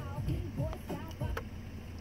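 Quiet voices talking over a low, steady rumble.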